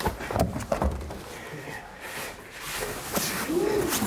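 Knocks and bumps of a large upholstered furniture piece being shoved out through a window frame, several in the first second and more near the end.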